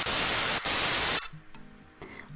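TV static sound effect: a loud, even hiss with a couple of brief dropouts, cutting off just over a second in. Faint background music follows.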